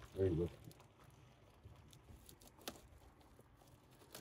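A short spoken word, then near quiet with faint rustling and a single sharp click of hands handling a cardboard-wrapped parts package.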